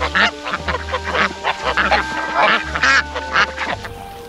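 A flock of domestic ducks quacking at the feed, many short calls overlapping throughout.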